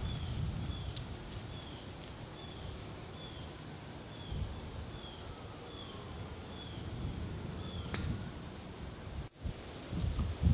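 Outdoor ambience with a bird repeating a short falling chirp about every two-thirds of a second. About eight seconds in there is a single sharp click of a golf iron striking the ball.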